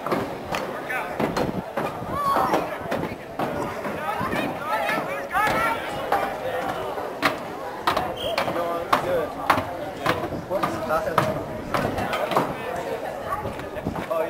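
Voices of players and spectators calling out across a lacrosse field, with sharp clacks and knocks of lacrosse sticks and ball striking, several times over.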